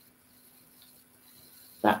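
Near silence: quiet room tone with a faint steady hum, then a voice begins just before the end.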